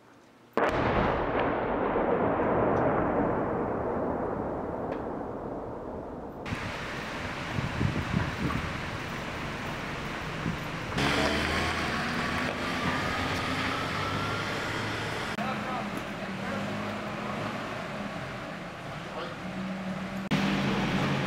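A sudden loud blast about half a second in, its rumble fading away over about six seconds: an explosion from an airstrike at night. After that, steady noisy street sound with voices.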